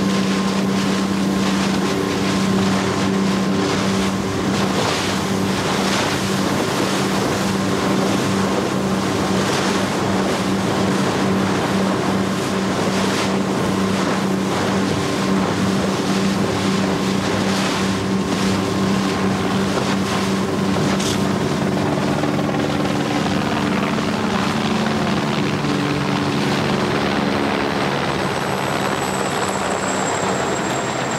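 Motorboat engine running steadily at speed, with the rush of water from the wake and wind on the microphone. In the last several seconds a helicopter engine joins in.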